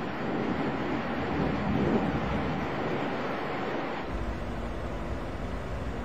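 Steady rushing noise of the X-36 subscale jet in flight, its small Williams turbofan and the airflow. About four seconds in it turns to a deeper rumble with a faint steady hum.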